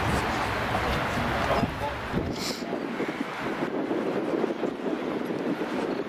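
Outdoor field ambience: wind rumbling on the microphone for the first couple of seconds, then indistinct voices of players in the distance, with a brief hiss about halfway through.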